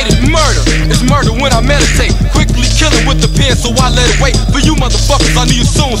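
1990s hip hop track: a rapper's vocals over a beat with a repeating bass line.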